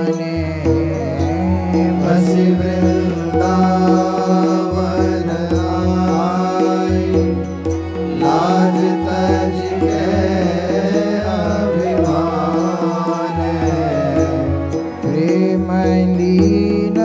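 Hindi devotional bhajan sung by a male voice to harmonium accompaniment, the melody bending over steady held drone notes.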